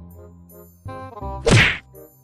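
A single loud cartoon-style whack sound effect about one and a half seconds in, over light plucked background music.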